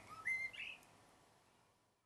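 A songbird singing a few short whistled notes in the first second, then the sound fades away.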